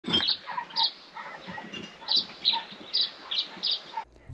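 Birds chirping: about seven short, high calls at irregular spacing over a soft background hiss.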